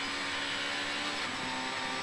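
2.0-litre Mk2 Ford Escort rally car's engine heard from inside the cabin, running hard at a steady pitch over road noise; a little over a second in the note breaks briefly and comes back slightly lower as the driver shifts from fourth to fifth gear.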